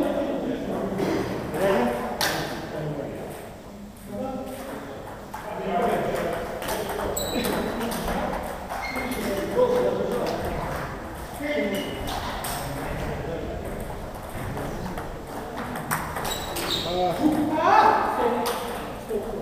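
Table tennis balls clicking off bats and tables during rallies at several tables at once, with players' voices.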